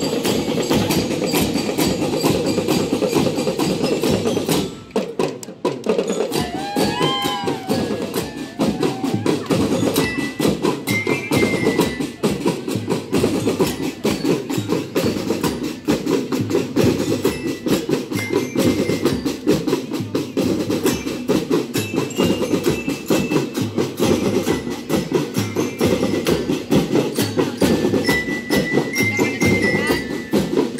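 Marching drum band playing: snare and bass drums beat a fast, steady pattern with cymbals. High bell-like melody notes join in from about ten seconds in.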